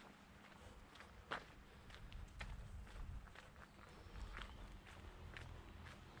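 Faint footsteps of a person walking on a paved sidewalk, about one step a second, over a low background rumble.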